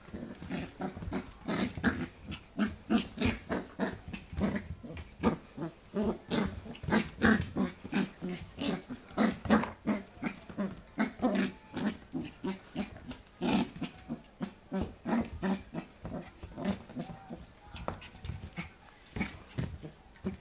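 Pembroke Welsh Corgi puppy play-growling in short, repeated bursts, about two a second, while mouthing and lunging at a hand, with sharp clicks mixed in.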